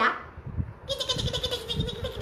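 A woman's voice holding one long, trembling vocal note for about a second, starting about a second in.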